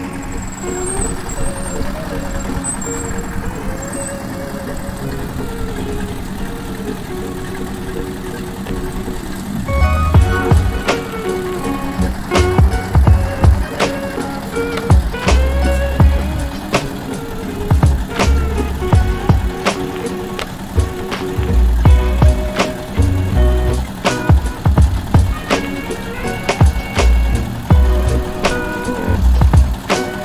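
A stationary engine driving a hoist winch runs steadily, with music under it. About ten seconds in, music with a heavy, regular beat comes in and becomes the loudest sound.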